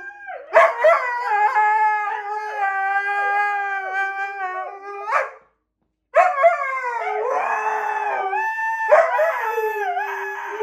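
Two huskies howling together in long, drawn-out howls, one holding a steady lower note while the other wavers higher above it. The howl breaks off for about half a second a little past halfway, then resumes. The dogs are howling in response to a missing packmate.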